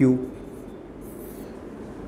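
Faint, brief scratch of a stylus writing on an interactive display board about a second in, over quiet room tone.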